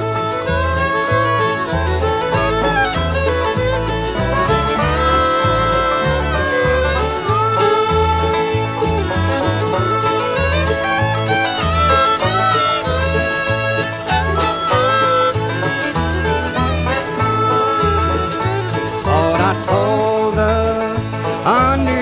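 Acoustic country string band playing an instrumental break between sung verses, with melody lines over a steady, evenly repeating bass beat.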